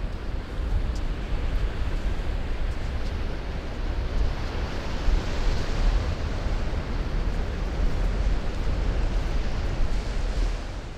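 Ocean surf washing onto a sandy beach, with wind: a steady, noisy wash over a deep rumble.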